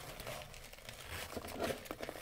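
Faint crinkling and rustling of foil trading-card pack wrappers and foam packing peanuts being handled as the packs are pulled from the box, sparse at first and busier after about a second.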